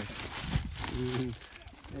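A person's short hum about halfway through, over faint rustling and handling noise as bagged groceries are lifted from a car trunk.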